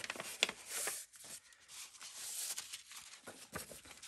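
Sheets of paper rustling and sliding as journal pages are handled and laid down, with a few light taps in the first second.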